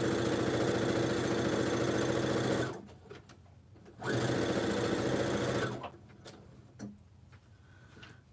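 Compact electric sewing machine stitching quilt fabric pieces in two runs: it stops a little under three seconds in, starts again about four seconds in and stops again near six seconds. A couple of light clicks follow.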